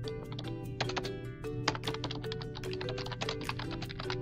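Typing on a computer keyboard: a quick, uneven run of key clicks, over background music.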